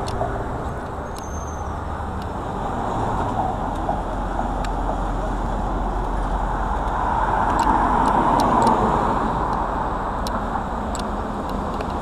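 Road traffic on a city street: cars passing steadily, with one vehicle passing louder about seven to nine seconds in.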